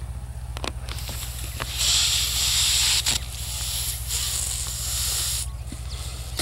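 A person blowing up a latex balloon: breath rushing into it in long puffs, with a short break about halfway through for a new breath, over a steady low hum.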